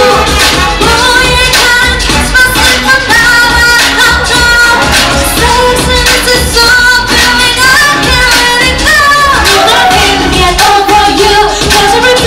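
Pop dance music: female voices singing a melody over a backing track with a steady, driving beat and bass.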